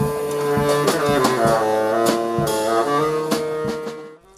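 A live band with saxophone, violin, keyboard, bass guitar and drums playing, long held notes over drum hits. It fades out near the end.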